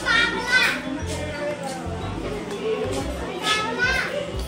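Small children's high-pitched voices calling out, once at the start and again near the end, over background chatter of adults and music.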